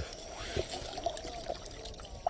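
Shallow seawater trickling and sloshing as it is stirred, faint and uneven.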